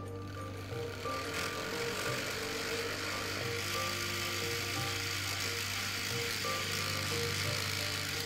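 Motorized LEGO top starter spinning a top up to speed: an even, high whir that builds over the first second or two, holds steady, and stops suddenly right at the end, with background music underneath.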